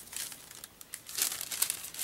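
A sheet of paper crinkling and rustling as it is picked up and handled, with small crackles that are loudest in the second half.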